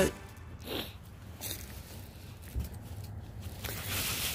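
Faint rustling and handling noise from clothing and movement, with a few soft crackles scattered through and a slight rise in noise near the end.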